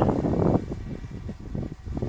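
Wind buffeting an outdoor microphone: an irregular low rumble that eases off about halfway through.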